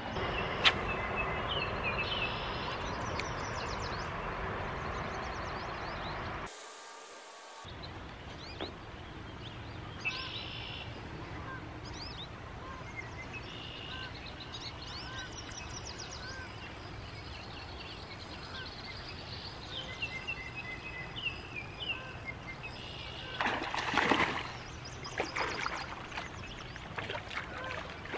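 Outdoor riverside ambience: a steady hiss with songbirds chirping throughout. Near the end come louder bursts of water splashing as a fish is brought in at the water's edge.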